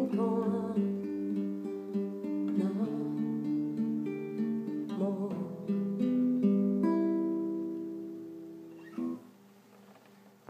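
Classical guitar playing a closing phrase of single notes and chords, the last chord ringing out and fading away; a brief knock near the end.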